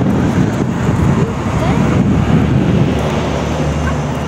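Loud low rumble of motor traffic, steady for about three seconds and then easing a little near the end.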